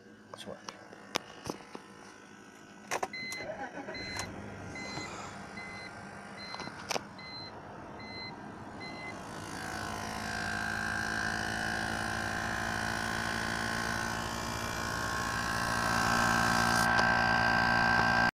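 Clicks and knocks of handling in a BMW E46, then an electronic warning chime beeping about twice a second for several seconds. After it, a steady engine hum that grows louder toward the end.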